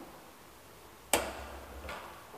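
A 1939 KONE traction elevator car travelling in its shaft: a sharp mechanical clack about a second in, with a low rumble after it, and a smaller click near the end.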